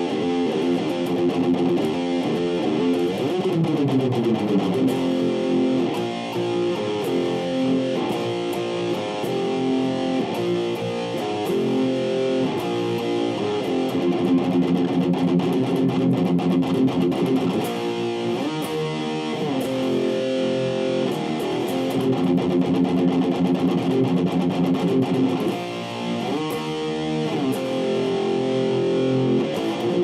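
Electric guitar, a red Les Paul-style solid body with humbuckers, playing a power-chord rock riff with several slides along the neck.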